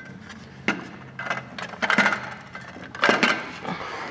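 Aluminium boarding ladder on a boat's stern being pulled down by hand: a series of sharp metallic clanks and clicks as it slides and knocks, with a cluster of knocks about three seconds in.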